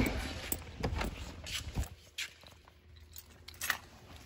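Handling noise from a woven plastic tote bag being lifted out of a car: a few light knocks and rustles, quieter in the middle, with another knock near the end.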